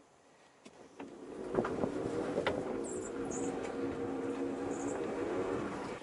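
The converted VW Beetle's DC electric drive motor humming steadily as the car reverses, with a few sharp clicks and knocks from the car. The sound begins about a second in.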